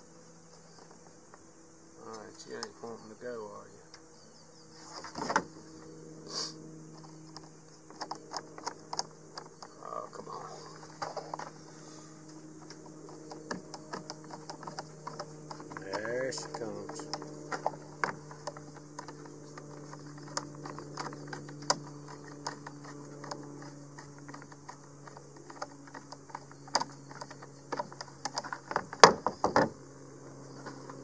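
Irregular small clicks, taps and rattles of a plastic RV roof vent lid and its metal hinge bar being handled and screwed together with a hand screwdriver. The sharpest clicks come near the end, over a steady low hum.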